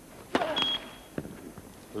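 A tennis serve is struck, then the net-cord sensor gives a short, high electronic beep, signalling that the serve clipped the net tape: a let. A single sharp knock of the ball follows about a second later.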